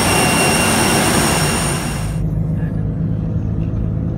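Jet aircraft noise on the airport apron: a loud hiss with several steady high-pitched whining tones. About two seconds in it cuts off abruptly to the low, steady rumble of a car on the road, heard from inside the car.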